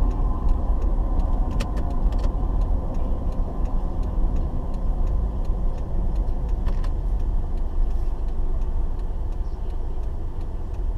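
Low, steady engine and road rumble from inside a moving car, picked up by a dashboard camera, with a few faint clicks around two seconds in and again near seven seconds.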